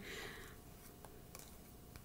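Faint handling of a tarot card deck: a soft rustle and a few light ticks as the cards are fingered in the hand, over quiet room tone.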